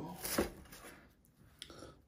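Chef's knife cutting down through a baked flaky-pastry pie onto a wooden chopping board, with one sharp knock of the blade on the board about half a second in; after that only a faint tick near the end.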